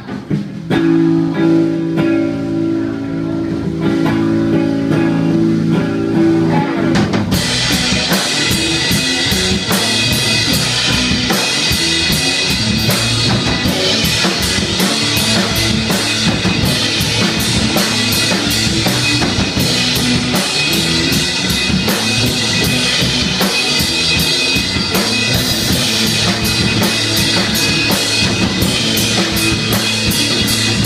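Live rock band playing an instrumental passage on two electric guitars, electric bass and drum kit. It opens with steady held notes, and about seven seconds in the drums and cymbals come in and the full band plays on at an even loudness.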